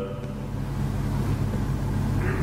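Steady low hum with a hiss over it: the background noise of the hall and its microphone sound system, with no distinct event.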